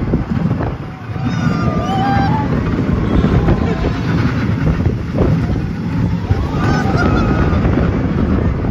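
Steel roller coaster train running fast along its track, a continuous rumble of the wheels under heavy wind buffeting on the microphone. Riders yell out briefly twice, once in the first few seconds and again near the end.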